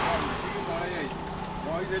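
Voices talking quietly over a motorcycle engine idling.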